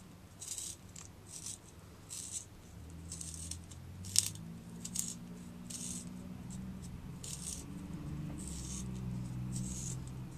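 Wooden pencil being turned in a small handheld sharpener: short scraping strokes, roughly one a second, as the blade shaves the wood, with a sharper click about four seconds in.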